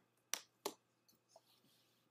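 Two short, sharp clicks about a third of a second apart, then near silence.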